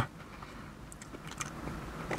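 Faint chewing, a few soft mouth clicks over a low steady hum inside a car.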